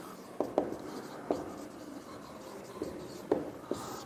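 Marker pen writing a word on a whiteboard: soft rubbing strokes with a few short ticks as the tip touches down.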